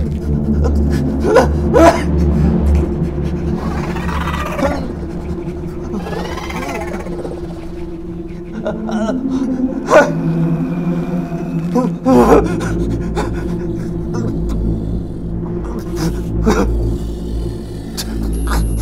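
Horror film sound design: a low rumbling drone under held tones, broken by several sharp hits, the loudest about ten seconds in, with wavering, moaning cries in the middle.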